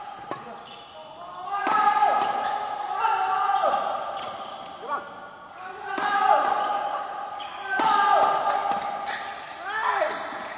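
Badminton rally in a large hall: sharp racket strikes on the shuttlecock about every one to two seconds, with shoes squeaking on the court floor between them, all ringing with hall echo.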